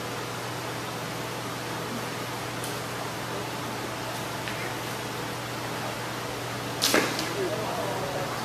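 Steady hall noise with a low hum, broken by a few faint clicks. A single sharp knock about seven seconds in is the loudest thing, and faint voices follow near the end.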